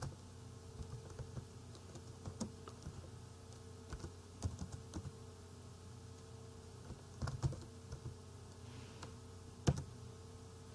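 Computer keyboard keystrokes, sparse and irregular, as a command is typed, with a sharper key click near the end. A faint steady hum runs underneath.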